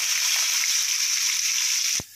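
Cubed potatoes frying in hot oil in a pan: a steady, even sizzle.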